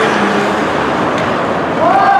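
Ice hockey game ambience: a steady wash of rink noise from skates on the ice and spectators. Near the end a spectator's long, drawn-out shout rises and then holds.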